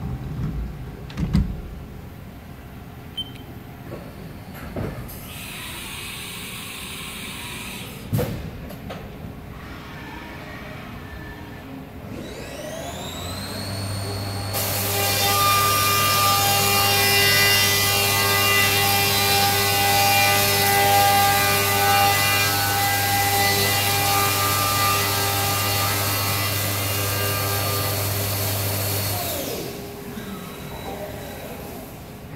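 CNC milling machine: a few clunks and a brief hiss of air in the first half, then the spindle spins up with a rising whine about twelve seconds in. It then runs at speed cutting metal plates under flood coolant, a loud, steady whine with a hiss of spray, and winds down shortly before the end.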